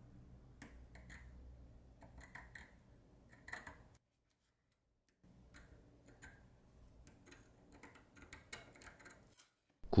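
Faint short scratches and small clicks of a metal-tipped Mohs hardness pick dragged across Corning Gorilla Glass phone panels. The hard picks gouge the glass as they scrape. There is a brief pause about four seconds in.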